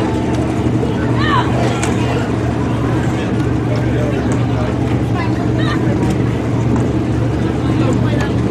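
Dirt-track sport modified race car's engine idling steadily, a low even drone, with voices talking over it.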